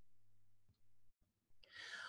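Near silence with a faint steady hum for about the first second, then a soft intake of breath near the end.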